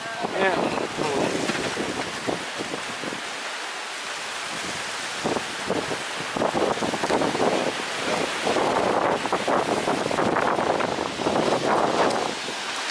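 Heavy storm rain and strong gusting wind around an open thatched-roof bamboo hut. The wind buffets the microphone, and the noise swells and eases in gusts.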